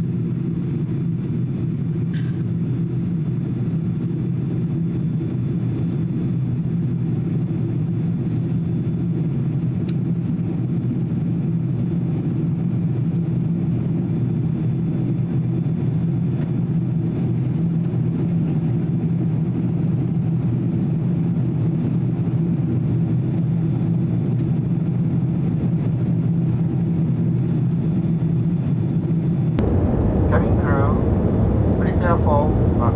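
Steady cabin noise inside a Boeing 777-200 in flight: an even, low rumble of jet engines and airflow heard from a window seat over the wing.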